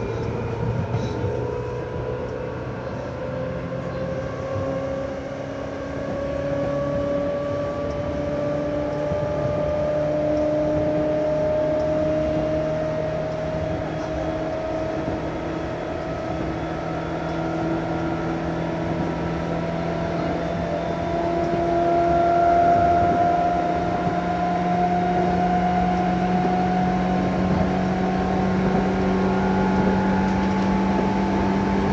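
Seibu 2000-series electric train set 2085F running, with the whine of its motors and gears rising slowly in pitch as it gains speed over the rumble of wheels on the rails.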